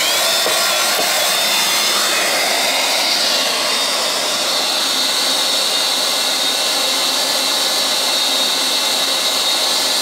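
DeWalt portable wet/dry shop vacuum switched on, its motor starting suddenly and then running with a loud, steady whine that rises slightly in pitch about three to four seconds in. The hose is drawing air from a yellow jacket nest entrance to suck the wasps into soapy water in the tank.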